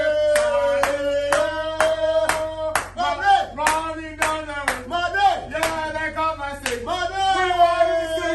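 Men singing a football chant together and clapping in time, about two claps a second.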